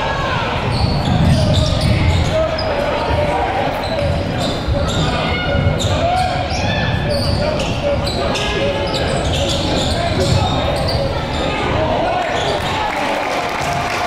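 Live sound of a basketball game in a large gym: a basketball bouncing on the hardwood court, with indistinct shouting voices from players and crowd echoing through the hall.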